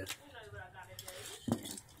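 Light clinks and clatter of small toy cars and a plastic toy track being handled, with one sharp click about halfway through.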